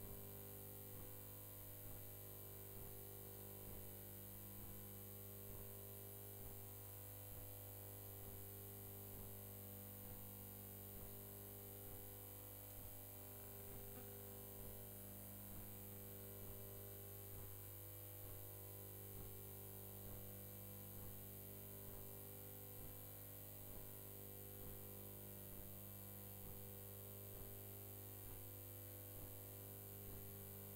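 Near silence: a steady low electrical hum with faint hiss.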